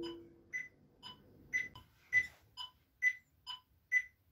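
The tombak's last stroke rings out briefly, then a metronome ticks faintly and evenly, about two short high beeps a second, keeping the tempo while the drum is silent.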